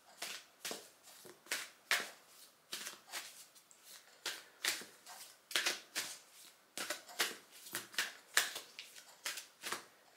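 A deck of oracle cards being shuffled by hand: short papery swishes and riffles, about two or three a second.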